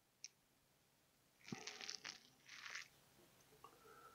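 Near silence with faint crunching clicks of a small plastic model wheel being pressed onto its undercarriage hub, in a short cluster about a second and a half in.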